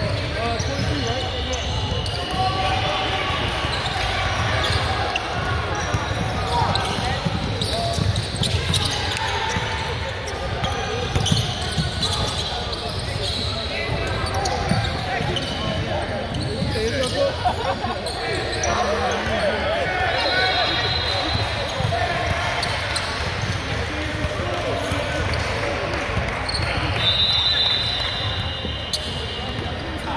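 Basketball game in a large gym: indistinct voices of players and spectators, with a ball bouncing on the hardwood court now and then.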